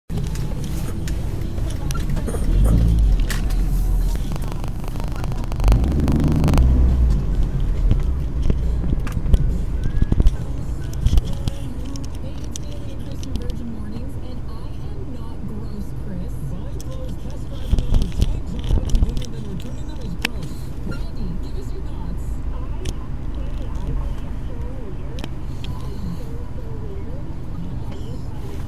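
Low rumble of a car's cabin picked up by a dashcam microphone, with several louder low thumps and swells in the first seven seconds and scattered clicks.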